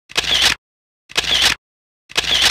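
The same short sound effect played twice, about a second apart. Each burst lasts about half a second and cuts off sharply into dead silence.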